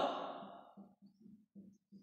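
A man's voice trailing off at the end of a dictated word, followed by a few faint, short, low murmurs.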